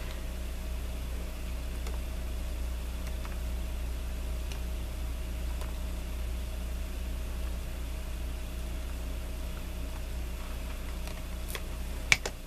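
Steady low hum and hiss of room noise, with a few faint ticks from a paper card being handled and a sharper click near the end.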